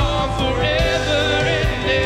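Worship band playing live, with singers holding long notes of a slow congregational song over acoustic guitar, keyboard and drums.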